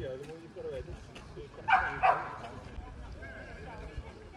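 A dog barking twice in quick succession, about halfway through, over the chatter of a crowd.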